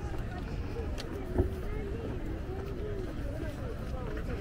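Indistinct voices of passers-by talking over a low steady rumble of outdoor noise, with a single short thump about one and a half seconds in.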